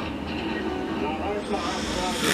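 A woman blowing on and sipping hot coffee from a mug: a steady rush of breath over the cup, with a few small vocal sounds in the second half.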